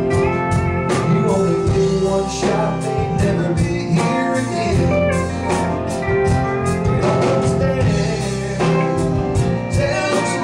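Live country-blues band playing at full volume: an electric guitar lead over bass, keyboard and drums, with a steady beat.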